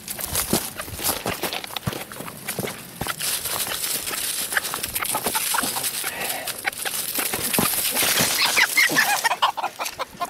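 Chickens clucking, with a few sharper calls near the end, over the rustle and crunch of dry leaves and scuffling footsteps as a hen is chased to be caught by hand.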